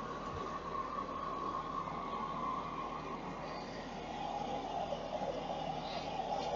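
Steady low background rumble with a faint humming tone that drops slightly in pitch about halfway through.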